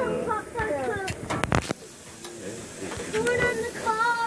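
Metal grill tongs clacking against a gas grill's grate as corn cobs are set down, a few sharp clicks in quick succession about a second and a half in. A young child's high-pitched voice babbles around them.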